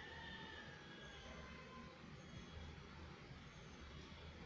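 Chopped onions, mustard seeds, dal and curry leaves frying in oil in an aluminium kadai: a very faint, steady sizzle over a low hum, with no distinct scrapes from the spatula.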